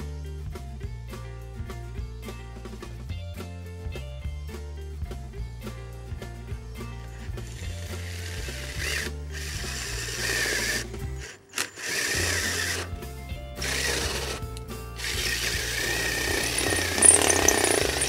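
Cordless drill boring out the damaged azimuth-adjustment screw thread in a Sky-Watcher EQ6-R Pro mount. It runs in several bursts with a high whine, starting about seven seconds in and briefly stopping near the middle, over background music that carries the first seven seconds on its own.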